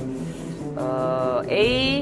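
Tense background music with steady low notes. About a second in, a loud held voice-like note comes in, and near the end it bends into a rising glide.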